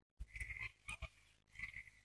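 Faint, brief animal calls, three short ones spread across a quiet field recording.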